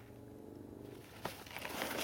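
Nylon backpack fabric rustling and crinkling as the hydration compartment is handled and pulled open, starting about a second in. A faint low hum comes before it.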